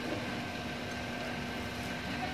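Steady mechanical hum with a few faint constant tones over a background hiss, without a change or a knock.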